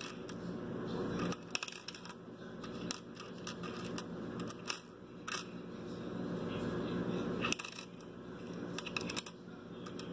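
Lincoln cents clicking and clinking against each other and the wooden tabletop as a hand sorts through a roll of pennies. The sharp clicks come scattered, some in quick little clusters, with short pauses between.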